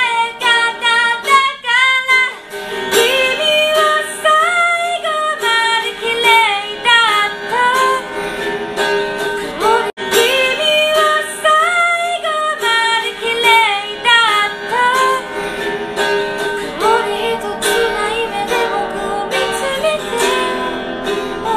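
A woman singing to her own guitar accompaniment on a thin-body electro-acoustic guitar, with one very brief dropout near the middle.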